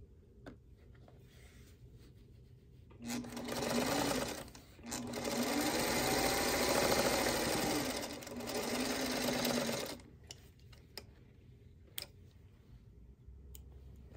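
Singer Featherweight sewing machine stitching a seam through fabric. It runs in two spells from about three seconds in, with a brief stop in between, and its motor whine rises and falls with speed before it stops near ten seconds. A few light clicks of handling follow.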